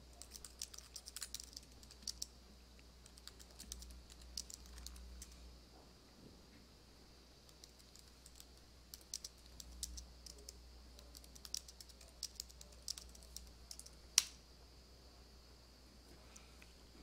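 Faint computer keyboard typing in short bursts of keystrokes as commands are entered at a terminal, with one sharper, louder key click near the end.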